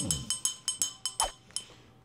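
Small brass handbell shaken rapidly, its clapper striking several times a second with a bright ringing that dies away about a second and a half in.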